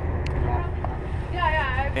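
Steady low rumble of wind buffeting the microphone on an open pier, with a person's voice for a moment about a second and a half in.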